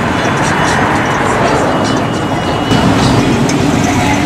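Engines of G-body Chevrolets running as the cars pull out of the lot, a little louder about three seconds in, with music playing over them.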